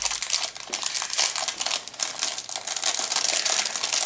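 Thin plastic bag crinkling and rustling steadily as hands work a clear-plastic model-kit sprue out of it.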